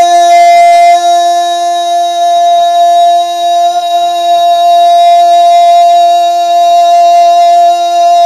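A single long, steady drone note held without a break, part of the backing of a naat recording, between the reciter's sung lines.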